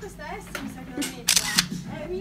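People's voices laughing and murmuring under their breath, with a short, sharp hiss a little over a second in.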